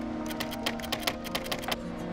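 Keyboard typing sound effect: a quick run of key clicks that stops just before the end, over background music with sustained tones.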